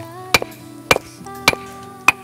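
Hammer striking a block of stone in three sharp, evenly paced blows about half a second apart, each with a short ring: the rough stone is being chipped round into a stone mortar (cobek). Background music with held tones plays underneath.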